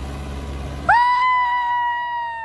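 Mahindra 585 DI XP Plus tractor engine running under load, then about a second in a long, high-pitched cheering whoop from an onlooker that holds one pitch and drowns out the engine.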